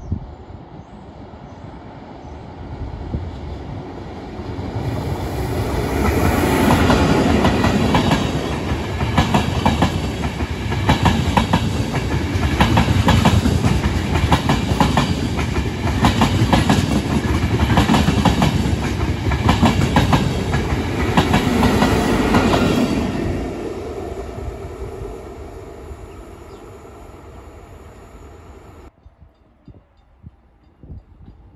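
A Trenitalia Intercity passenger train passing at speed. It builds up over a few seconds, then gives a long stretch of loud, rhythmic clickety-clack of coach wheels over rail joints, and fades away as the last coaches go by.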